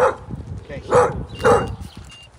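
A dog barking three times: once at the start, again about a second in, and a third time half a second later.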